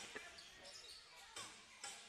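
Faint sound of a basketball bouncing on a hardwood court a few times, over the quiet background hum of an indoor arena.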